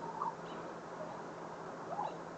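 Quiet outdoor background noise with a faint steady low hum, and one brief faint rising chirp about a quarter second in.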